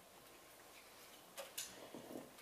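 Near silence: room tone in a meeting room, broken by two short clicks about one and a half seconds in.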